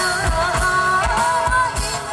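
Live band music with a woman singing a melody through a microphone over a steady kick-drum beat.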